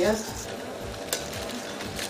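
Soft scraping and handling noises of food preparation with kitchen utensils, with one sharp click just over a second in.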